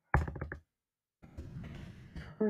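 Computer keyboard being typed on: a quick run of about six keystrokes near the start, followed by a fainter stretch of low noise.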